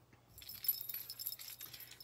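Silver chain necklace with dangling metal and purple acrylic discs jingling and clinking as it is lifted off over the head, starting about a third of a second in.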